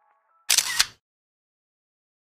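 Camera shutter click, an edited-in sound effect: one short, loud snap made of two clicks about a third of a second apart, about half a second in, followed by dead silence.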